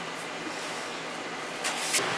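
Ninja Foodi running on its roast function, a steady rush of fan exhaust air with a low hum, super loud; it swells louder near the end.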